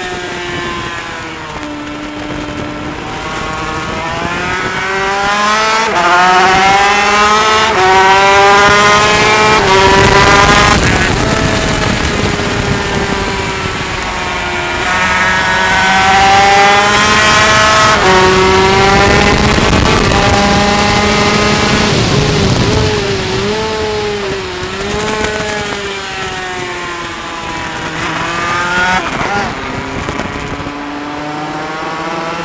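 Onboard sound of a Yamaha TZ250 two-stroke twin race engine at racing speed, its pitch climbing under full throttle and dropping back at each gear change, several times over. A loud rush of wind over the mic runs underneath.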